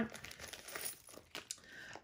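Faint rustling and crinkling of items being pulled out of a small zippered card case by hand, with a few light clicks.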